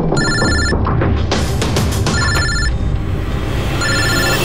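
Dramatic background music with an electronic telephone ringing over it in short pulsed bursts, about every two seconds.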